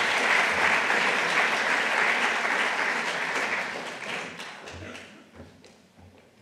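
Large audience applauding, dying away over the last two seconds or so.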